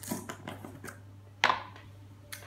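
Plastic screw lid of a jar of powdered peanut butter being twisted open: a few small clicks, with one sharp snap about one and a half seconds in.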